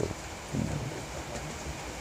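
A pause in a man's talk: low, steady room background noise, with a brief faint low sound about half a second in.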